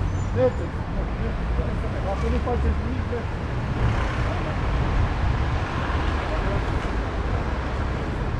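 Steady city road traffic: cars passing on the street, with faint voices talking in the background.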